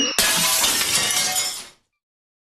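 Cartoon logo sound effect: a rising whistle-like glide is cut off by a sudden crash like breaking glass, which dies away in under two seconds.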